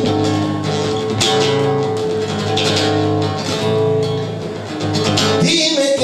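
Spanish acoustic guitar played in flamenco style, rhythmic strummed chords ringing on.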